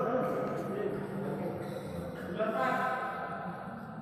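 Indistinct voices of people talking in a large, echoing indoor hall, in two short spells: right at the start and again a little past the middle.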